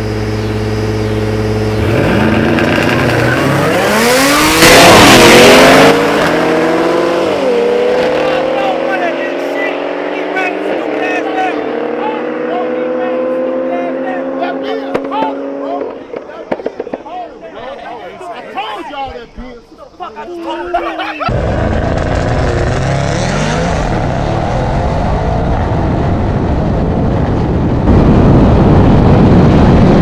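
A car engine held steady, then accelerating hard in a street race, its note climbing with drops in pitch at upshifts about eight and eleven seconds in. It pulls on until it fades in the middle. A rushing wind-like noise then takes over, with loud bursts of noise early on and near the end.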